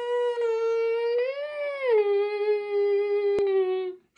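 A young man's voice humming one long note. It swells a little higher about a second and a half in, then drops to a lower pitch that holds until it stops just before the end. A faint click sounds near the end.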